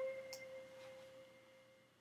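A single clear ringing tone, like a struck chime, fading away over about a second and a half, with a faint click about a third of a second in.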